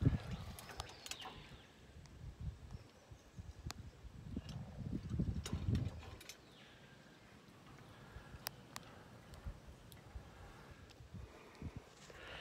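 Wind buffeting a phone microphone high on an open steel tower: an irregular low rumble that swells about four to six seconds in, with scattered faint clicks of handling.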